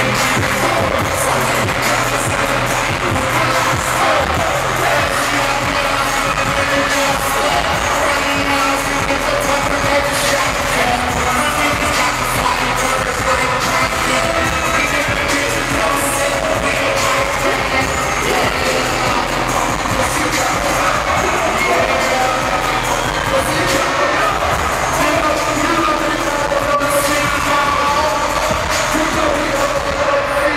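Live hip-hop performance: a loud, bass-heavy beat through the PA with a rapper's vocals over it, running on without a break.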